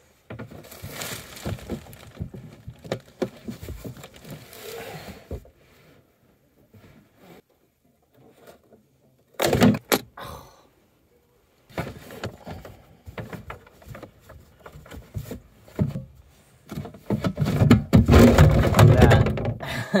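Knocks, scrapes and rustling from hooking a bungee cord around a large plastic water container to hold it in place. There are a couple of sharp knocks about halfway through, and the loudest handling comes near the end, as the container is pulled and tested.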